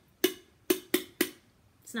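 A pen tapping an empty aluminium seltzer can, four quick taps, each with a short metallic ring.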